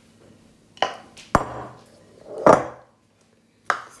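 A plastic measuring cup knocking against a glass mixing bowl as flour is tapped out of it: four separate knocks and clinks about a second apart, the loudest a longer rattle just past the middle.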